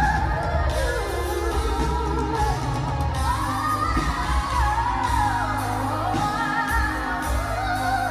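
A woman singing live with fast vocal runs that sweep up and down in pitch, backed by a band with drums, bass, keyboard and guitar.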